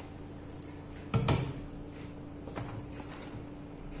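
A single short knock about a second in, an object set down on a wooden tabletop, over a faint steady hum.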